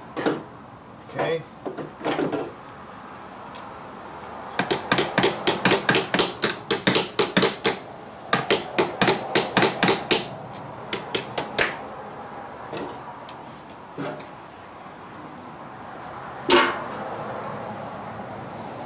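Hand tool on a car battery cable terminal as it is connected: a few separate metallic knocks, then two runs of quick sharp clicks, about six a second, over several seconds, and one more loud knock near the end.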